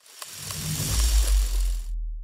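Title-card transition sound effect: a hissing whoosh that swells for nearly two seconds, joined about a second in by a deep low rumble. The hiss stops near the end while the rumble trails on briefly.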